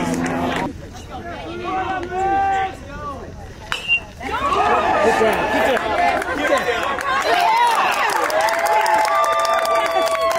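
Baseball crowd voices and shouts, with one sharp crack of a bat hitting the ball just before four seconds in. The crowd then breaks into loud cheering and long held yells as the ball is in play.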